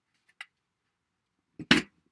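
A plastic craft circle punch clacking down once near the end, cutting a circle out of a sticky note, after a faint tick.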